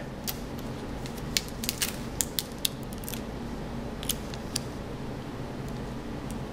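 Protective tape being peeled off a laptop motherboard: a scatter of sharp crackles and clicks, thickest over the first three seconds and thinning out after, over a faint steady hum.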